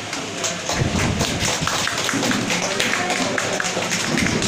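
A small group of people clapping by hand, the claps close together and uneven.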